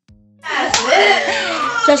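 A faint plucked-guitar jingle, then an abrupt cut to loud room sound: voices, a sharp slap-like click just after the cut, and a woman starting to speak near the end.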